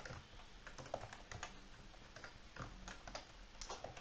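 Faint computer keyboard typing: irregular key clicks.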